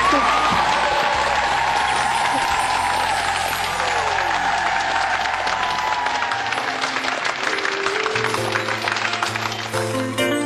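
Studio audience applauding over background music, the applause thinning out about eight seconds in while the music carries on.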